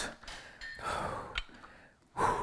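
A man exhaling, an audible breath out while curling dumbbells, followed by a single short click a little after the middle.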